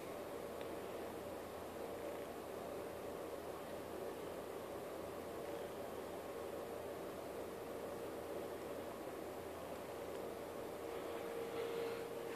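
Faint steady hiss with a thin, steady hum-like tone underneath, growing slightly louder near the end; no distinct events.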